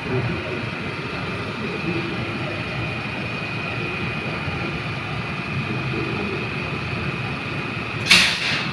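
Steady running noise of an elevated light-rail train heard from inside the car, a constant rumble with a steady high-pitched whine over it.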